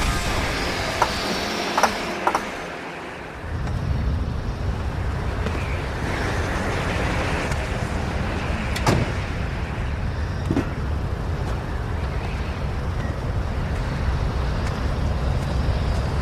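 A car's engine running with a low rumble, with a few sharp mechanical clicks and creaks. The rumble drops away briefly about three seconds in, then returns.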